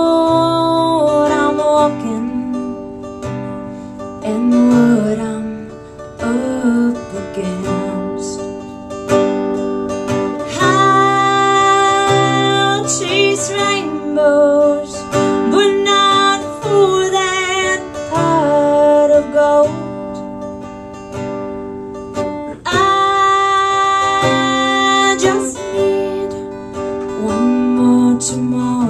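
Live acoustic country song: acoustic guitar accompaniment under a woman singing, with long held notes that waver in vibrato.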